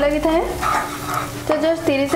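Spatula stirring and scraping a mustard-spice paste as it fries in oil in a nonstick wok, with a soft sizzle.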